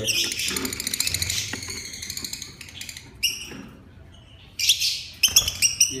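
Lovebirds chattering with quick, high-pitched chirps: a dense run of chirping in the first couple of seconds, a few separate calls, then a flurry of sharp chirps near the end.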